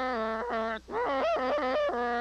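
Saxophone playing a melody, a held note breaking off about half a second in, then shorter notes that waver and bend before another held note near the end.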